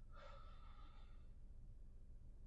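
Near silence with a steady low hum. About the first second holds a faint short tone with overtones that fades out, an outro sound effect.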